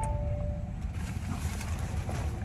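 Low rumble inside a parked car's cabin, with a short electronic tone at the start that steps down to a lower note and stops within the first second.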